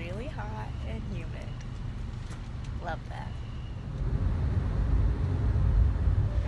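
Low road rumble inside a moving taxi's cabin, growing louder about two-thirds of the way through.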